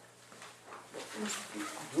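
A person's voice speaking indistinctly, starting about a second in, over a low steady room hum.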